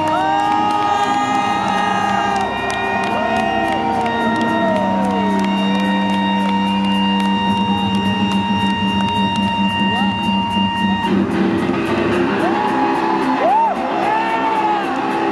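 Live rock band's electric guitars holding sustained drones and ringing tones, with a crowd cheering and whooping over them. About eleven seconds in, the held notes change to a lower set.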